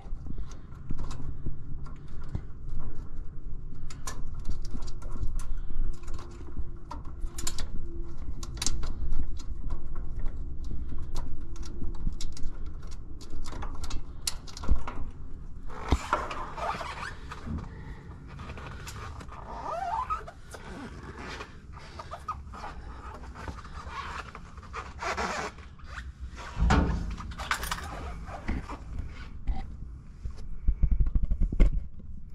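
Hands working on metal parts and air-line fittings inside a machine: many short clicks and knocks over a steady low rumble, with a longer stretch of scraping and handling noise in the middle and a loud thump near the end.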